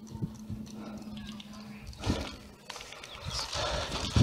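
Irregular soft thuds of footsteps on grass and small knocks of carried gear, with faint voices in the distance.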